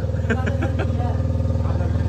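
An engine running steadily at idle, a low even hum throughout, with brief voices over it about half a second in.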